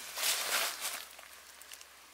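Dry leaf litter rustling as a dead whitetail buck's head is lifted and turned by its antlers. The rustle is loudest over the first second, then dies down.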